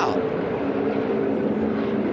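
V8 engines of a pack of NASCAR Xfinity stock cars running at racing speed, a continuous drone that holds one steady pitch.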